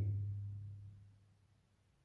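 A man's voice trailing off in a low, steady hum that fades out over about a second and a half, followed by quiet room tone.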